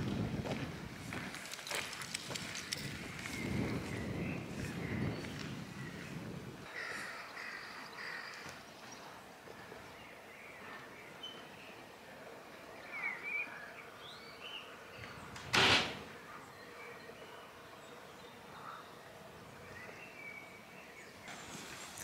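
Quiet open-air ambience: birds calling now and then, and footsteps crunching on a gravel drive in the first few seconds. One short, loud rush of noise stands out about two-thirds of the way through.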